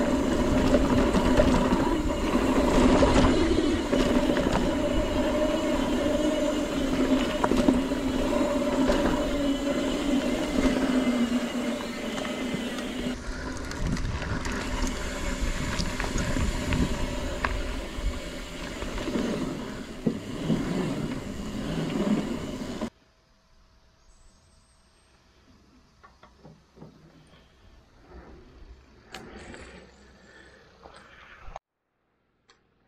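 Mountain bike rolling along a dirt singletrack, heard from a camera mounted on the bike or rider: tyre noise and rattle with wind rumble and a steady hum. It cuts off suddenly about 23 seconds in, leaving only faint, quiet sounds.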